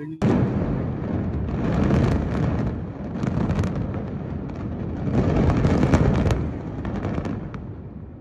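Controlled demolition of two high-rise towers: explosive charges go off in a rapid crackling sequence that starts suddenly, over a heavy low rumble as the buildings collapse. It dies down near the end.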